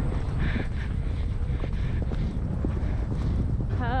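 A horse's hoofbeats on grass at speed under the rider, with steady wind noise on the helmet microphone.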